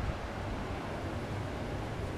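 Steady low rumble and hiss of outdoor background noise, with no distinct events.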